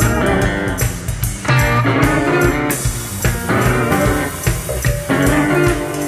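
Live electric blues-rock band playing an instrumental break, guitar riffs over bass and drums, recorded from the soundboard.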